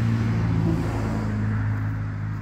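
A car driving past on the road: a steady low engine hum with tyre and road noise, a little louder in the first half and easing toward the end.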